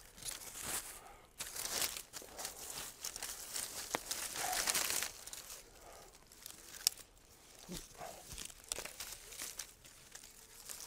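Dry water reed rustling and crackling in irregular bursts as a bundle is worked by hand against a thatched roof, with a couple of sharp clicks about four and seven seconds in.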